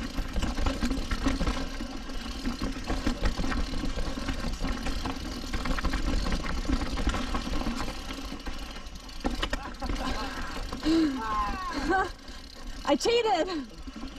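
Mountain bike descending a steep, rocky downhill trail: tyres, chain and frame rattling over rocks, with a steady low rumble of wind on the camera microphone. There are several sharp knocks from rock hits and short vocal exclamations near the end.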